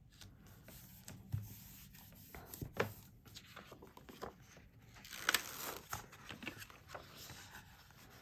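Faint rustling and crinkling of a self-laminating plastic sheet as its paper backing is peeled away by hand, with a few sharp ticks.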